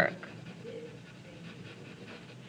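Graphite pencil scratching faintly back and forth on paper while shading.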